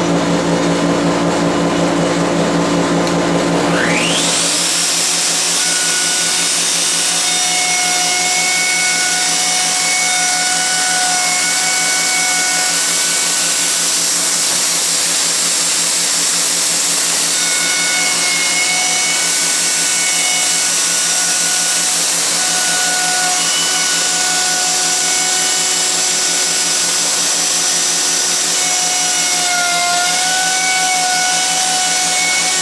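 A dust collector hums steadily. About four seconds in, a Festool OF 2200 plunge router spins up with a rising whine, then runs at full speed routing a rabbet in a wooden frame, its tone shifting on and off as the bit cuts.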